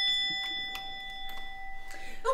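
Doorbell chime ringing out, its steady bell tones fading away over about two seconds, with a few faint clicks in between.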